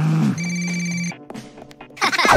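A telephone ringing once, a steady electronic ring of under a second that starts about a third of a second in.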